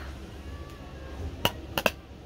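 Three sharp clicks of makeup items being handled, one about one and a half seconds in and two in quick succession just after.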